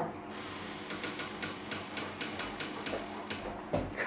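A golden retriever wriggling in a wicker basket: a run of faint, irregular clicks and rustles, about four a second, with a low bump near the end.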